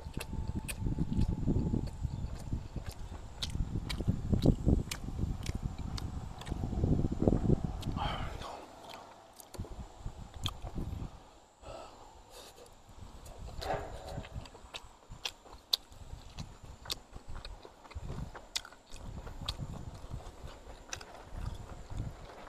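A man chewing mouthfuls of boiled pork and rice close to the microphone, with many wet lip-smacking clicks; the chewing is heaviest in the first eight seconds.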